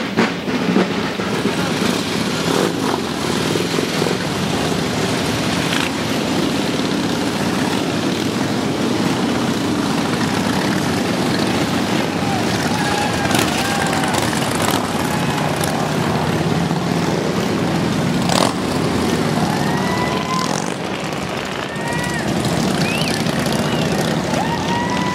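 Motorcycle engines running and moving slowly, a steady low rumble, under crowd voices. Short high chirps come in over it in the second half.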